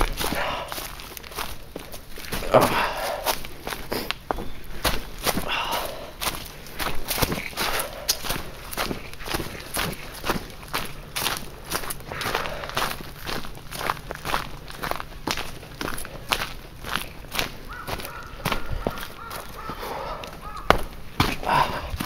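Quick, steady footsteps of a hiker walking downhill on a dirt forest trail strewn with dry leaves, about two or three steps a second, with heavy breathing between them.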